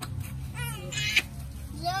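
A child's high-pitched voice making short rising calls, three times, over a steady low hum.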